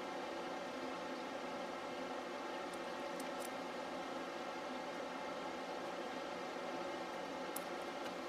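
Steady background hum with a few faint light ticks of metal tweezers pressing a small sticker onto a paper planner page.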